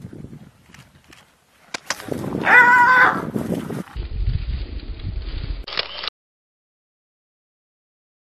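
Lions rushing a hyena: scuffling, with a short high, wavering animal cry about two and a half seconds in, followed by rough low rumbling noise that cuts off suddenly about six seconds in.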